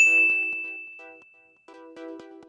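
A single bright ding, a chime sound effect struck once, its high tone ringing and fading away over about a second and a half, over soft background music.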